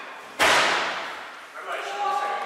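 A single sharp, loud impact about half a second in, which rings out through the large hall for about a second. Voices can be heard before and after it.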